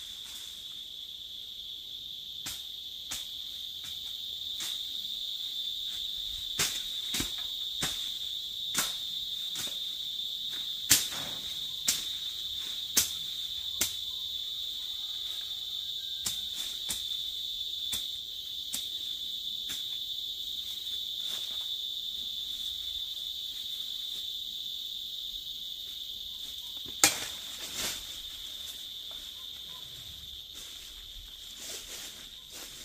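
A steady, high insect drone. Sharp, irregular knocks sound over it, the loudest about eleven seconds in and again near the end.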